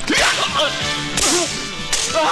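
Sharp whip-like swishing strikes, a loud one at the start and another about a second in, with a man's wavering, strained cry between them.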